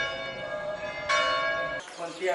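A church bell ringing. It is already sounding at the start, is struck again about a second in, and is cut off shortly before the end.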